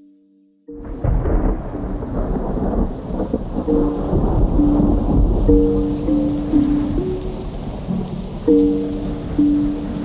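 Rain and low rolling thunder, starting suddenly about a second in after near silence, with a slow melody of held notes playing over it.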